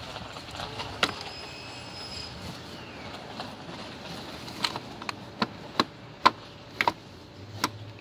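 Non-woven garden fabric rustling as it is pushed down into a plastic laundry hamper, with a sharp click about a second in and several more sharp clicks in the second half, the loudest a little after six seconds.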